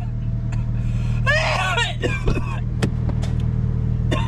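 Steady low drone of an idling vehicle engine, with a short burst of voice about a second in and a couple of light clicks near the middle.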